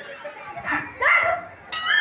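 Short, loud bark-like yelps from a performer's voice through the stage sound system, three calls with the last two the loudest.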